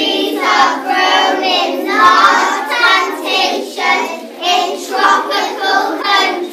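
A group of young children singing together, a classroom song they accompany with hand actions.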